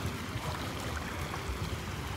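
Shallow pool water splashing and lapping around a toddler's feet as she wades through ankle-deep water, with a low, uneven rumble underneath.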